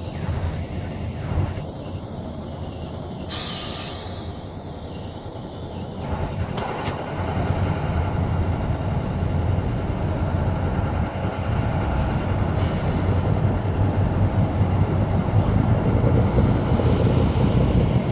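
Diesel engines of a column of four-wheeled armoured vehicles driving past, a low rumble that grows louder from about six seconds in. A short hiss sounds about three seconds in.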